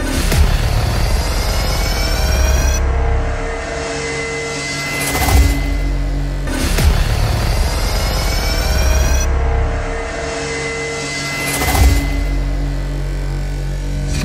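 Background music: a dramatic electronic track with sustained tones, rising sweeps and a heavy hit every few seconds.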